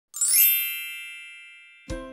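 A bright chime sound effect: a quick upward shimmer settles into a ringing, bell-like ding that fades away over about a second and a half. Just before the end, a plucked-string intro tune begins.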